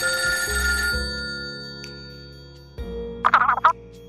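Telephone ringing with a bell-like ring that stops about a second in, over background music with steady bass notes. A little after three seconds comes a short, loud warbling burst.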